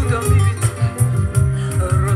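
A woman singing live into a microphone over a recorded backing track with a steady pulsing bass beat and crisp percussion, amplified through a stage PA; her wavering, vibrato-laden voice stands out near the end.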